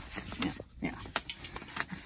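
Sheets of construction paper being folded and pressed flat by hand, giving scattered short crinkles and rustles.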